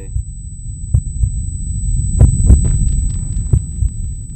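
Heartbeat sound effect in a suspense soundtrack: paired thumps about once a second over a steady low rumble.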